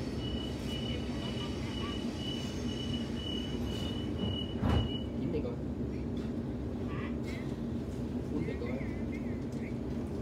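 Inside a Sydney Trains Waratah carriage: a rapid series of high beeps, the door-closing warning, sounds for about five seconds and ends in a loud thud as the doors shut, over the carriage's steady low rumble.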